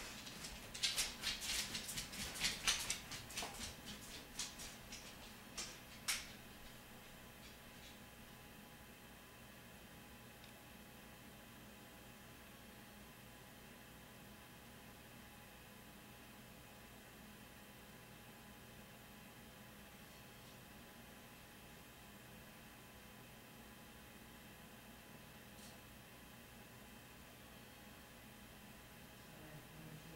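Quick clicks and rattles of something being handled for about the first six seconds, then a faint steady hum with a few faint steady tones.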